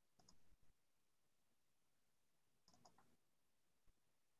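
Near silence with faint computer mouse clicks: two quick pairs, one just after the start and one near three seconds in.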